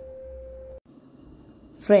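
A steady single-pitch hum that cuts off suddenly a little under a second in, leaving faint background noise.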